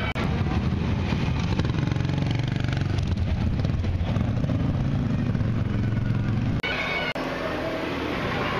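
A vintage motorcycle engine running at idle close by, a steady low throb. It cuts off abruptly about six and a half seconds in, and voices follow.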